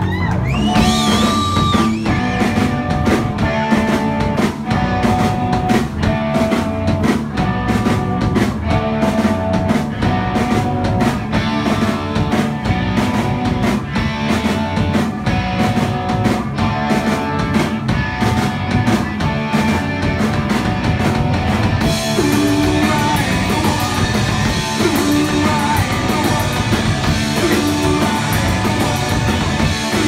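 Live punk rock band playing loud: electric guitars, bass guitar and drum kit, with the sound turning brighter and more cymbal-heavy about two-thirds of the way through.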